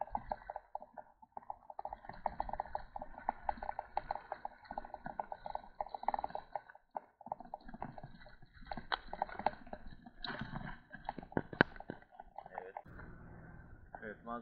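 A bicycle rolling along a paved road, giving a fast, steady run of clicks and rattles, with a few louder knocks in the second half.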